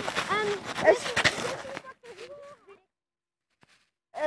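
Rustling and knocking of a phone being handled, its microphone being rubbed and bumped, for about two seconds, with short vocal sounds over it.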